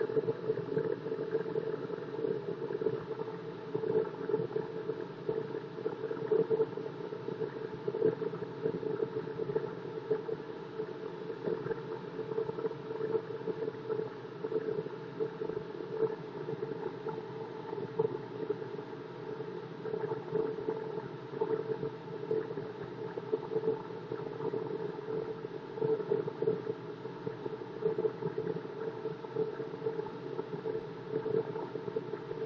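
Delta wood lathe running while a hand-held turning tool roughs a spinning block of HDPE plastic toward a cylinder. A steady motor hum, with the scraping of the tool cutting the plastic rising and falling unevenly.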